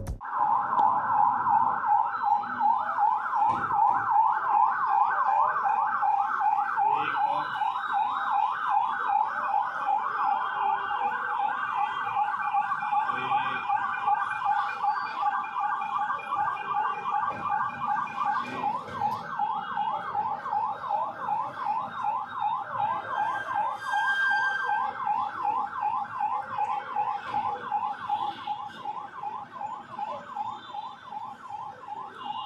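Police convoy siren sounding a rapid yelp, its pitch sweeping up and down about four times a second, gradually fading toward the end.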